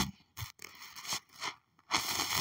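Handling noise from a phone held close to its microphone: a few short, soft scrapes and crackles while the phone is being worked.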